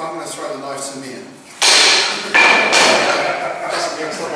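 Men's voices echoing in a large hall. About a second and a half in, a sudden loud burst of noise with a thud cuts in, breaks off briefly, and carries on almost to the end.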